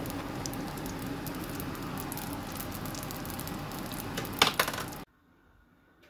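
Sfenj dough frying in hot oil in a pan: a steady sizzle full of small crackles, with two sharper clicks near the end. The sound cuts off suddenly about five seconds in.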